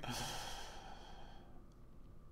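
A man's breathy sigh trailing off after a laugh, fading away over about a second and a half.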